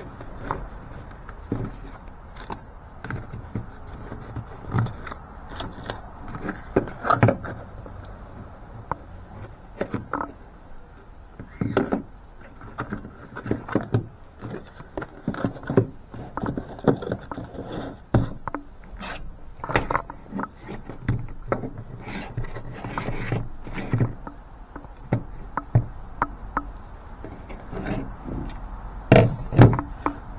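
Irregular handling noises of a cardboard box, a paper insert and knives being moved and set down on a table: scattered short knocks and rustles over a low steady rumble.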